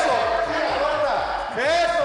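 Indistinct talking voices.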